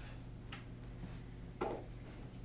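Steady low electrical hum with a faint click about half a second in and a louder short tap about a second and a half in, from a stylus on an interactive whiteboard as a line is drawn.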